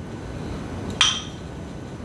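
A single sharp clink of kitchenware about a second in, with a brief high ring.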